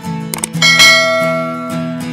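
Background music with a subscribe-button sound effect: a couple of quick clicks about half a second in, then a bright bell-like chime that rings and fades over about a second.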